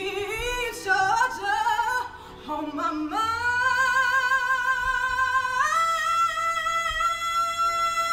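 A female and a male singer singing a duet: a short sung line with vibrato, then from about three seconds in a long straight held note that steps up in pitch near the six-second mark.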